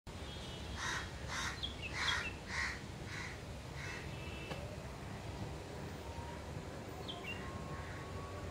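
A crow cawing, a run of about seven caws roughly half a second apart in the first four seconds, loudest about two seconds in. A few short high chirps from smaller birds come and go over a steady low background rumble.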